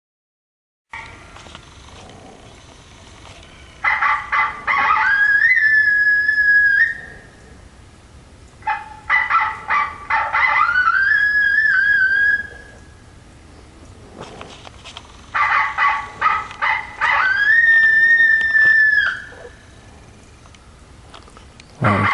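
Electronic predator caller (the "dead stump" caller) playing a call sequence three times. Each sequence is a quick run of short sharp notes, then a long drawn-out cry that rises and holds before breaking off.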